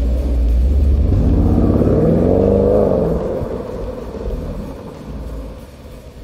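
A deep rumble that starts suddenly, then a vehicle engine revving, its pitch rising and falling back about two to three seconds in, before fading out.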